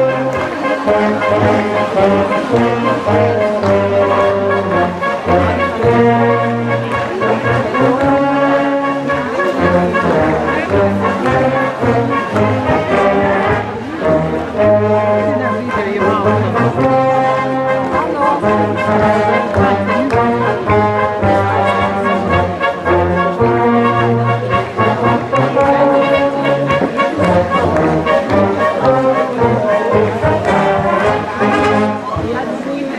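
Brass band playing a folk dance tune, with a bass line stepping between notes under the melody and a brief dip about halfway through.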